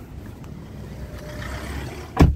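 Low steady rumble heard inside a parked car's cabin, growing slightly louder toward the end.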